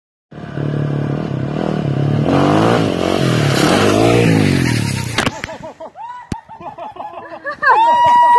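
Motorcycle engine revving hard, its pitch rising and falling several times for about five seconds, then cutting off abruptly with a sharp knock, followed by people's voices and another knock.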